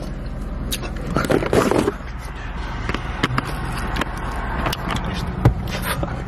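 Steady low engine hum inside a Jeep's cabin, with scattered clicks, scrapes and knocks from the camera being handled and moved. There is a short burst of voice about a second in.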